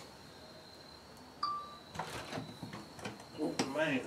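A single short electronic beep about a second and a half in, followed by light clicks and knocks from the metal door of a Masterbuilt electric smoker as it is unlatched and opened.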